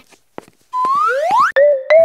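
Synthesized, theremin-like cartoon sound effect: after a short silence, two rising whistling glides, then a wavering tone that pulses about three times a second and climbs in small steps.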